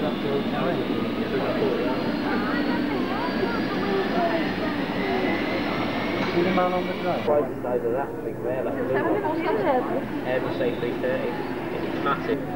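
Indistinct chatter of several voices, with no clear words. A faint high whine rises slowly in pitch under it and cuts off suddenly about seven seconds in.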